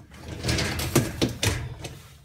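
Wire dishwasher baskets of a Miele G 560 rattling and clanking as they are handled and moved, with a quick run of sharp metallic knocks over about a second and a half.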